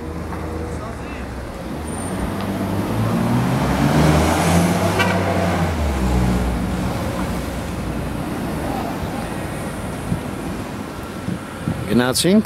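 A motor vehicle passes close by on the street. Its engine hum swells to a peak about four to five seconds in, then fades into steady traffic noise.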